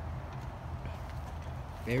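A steady low rumble of background noise with no distinct event; a man's voice begins right at the end.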